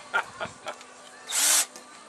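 Cordless drill run in one short burst of about a third of a second, a little past the middle.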